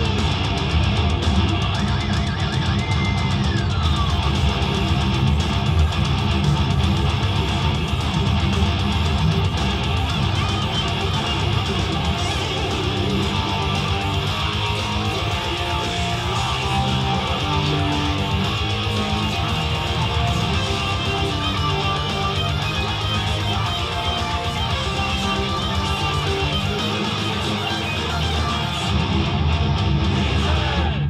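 Distorted ESP electric guitar played through an amplifier: a fast heavy-metal part that runs without a break, with a full low end underneath.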